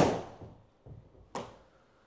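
Takomo 101U driving iron striking a golf ball off a hitting mat: one sharp strike right at the start that dies away over about half a second. A second, shorter sharp knock comes about a second and a half in.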